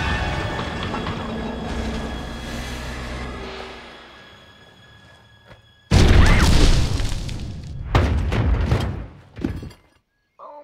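Film sound effects of a train wreck over a music score: a heavy crashing rumble dies away over about five seconds, then a sudden loud metal crash about six seconds in, followed by two more crashing impacts near the end.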